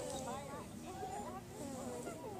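Many children's voices overlapping at a distance, a steady babble of calls and chatter with no single clear speaker.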